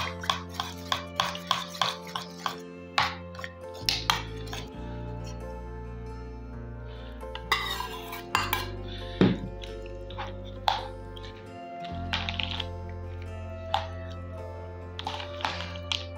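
A metal spoon clinks quickly and repeatedly against a glass bowl as a dressing is whisked, about three strikes a second for the first few seconds. Then come a few scattered clinks and knocks as the dressing is poured over grated carrots and stirred in.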